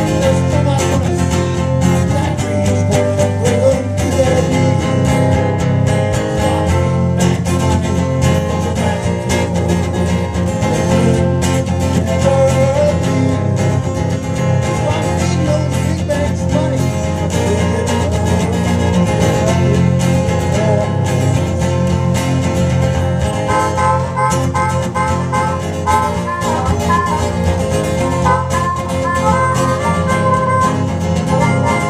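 Live blues song: guitar played throughout with a man singing over it, and from about three-quarters of the way in a harmonica plays over the guitar.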